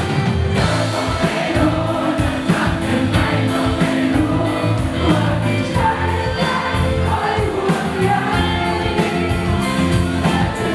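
Live rock band playing: a woman sings over electric guitars and a drum kit, with evenly spaced cymbal strokes keeping a steady beat.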